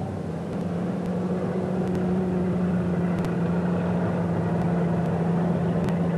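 Engines of old saloon stock cars running steadily at idle as they line up for a race start, a steady low drone.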